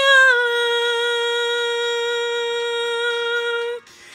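A woman's voice singing unaccompanied, sliding up slightly into one long steady note that she holds for about three and a half seconds before it stops shortly before the end.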